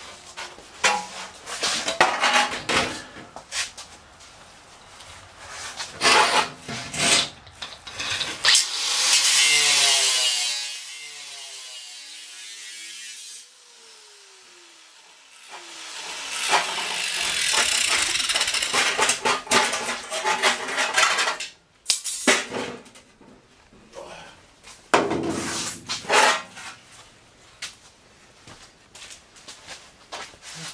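Angle grinder cutting a sheet-metal truck fender in several bursts of varying length, with clatter from the fender being handled between cuts.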